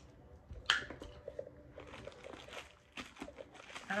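Clear plastic packaging crinkling in the hands as small camera accessories are handled and unwrapped, with one sharp click under a second in followed by irregular small crackles.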